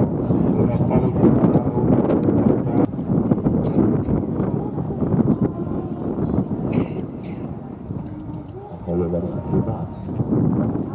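Indistinct voices talking over the hoofbeats of a pony cantering on a sand arena.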